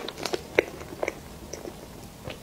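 Close-miked chewing and biting of food: a string of irregular soft clicks and crunches, the loudest about half a second in.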